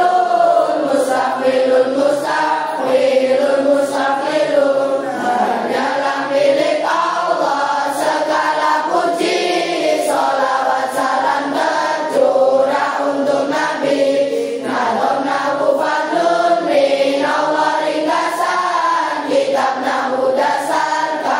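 A class of young students, boys and girls, chanting Arabic grammar verses (nahwu nadzom) together in unison as a sung melody.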